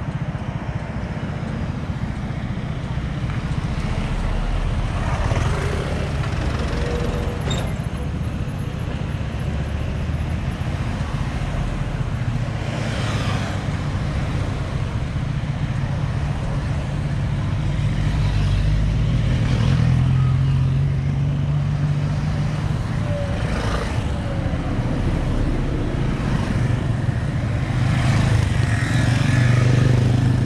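Cars and motorcycles driving past on a mountain road, each one swelling and fading, about five passes in all, over a steady low engine hum.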